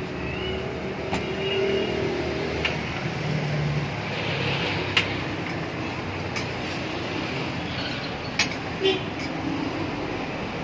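Steady street traffic noise, with a few sharp clicks and taps about halfway through and again near the end.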